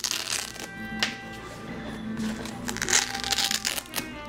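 Paper and chipboard rustling, with a few soft knocks, as a handmade chipboard scrapbook album is handled and opened, over steady background music.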